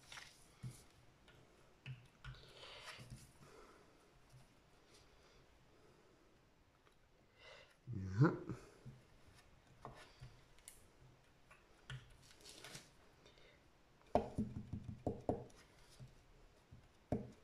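Quiet handling of paper and a stamp on a clear acrylic block: the sheet sliding and rustling on the cutting mat and the block pressed and rubbed onto it, with soft, brief rubbing sounds. A short vocal sound comes about eight seconds in, and a few more brief vocal sounds near the end.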